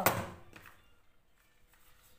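A single sharp thunk as a small plastic V8 sound card is set down on a desk, followed by faint handling noise.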